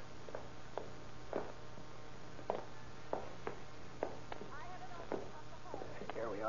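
Slow, uneven footsteps on wooden stairs, a radio-drama sound effect of drunk men staggering up a flight one step at a time. The knocks come at irregular intervals, heard over the steady hum and hiss of an old 1930s transcription recording.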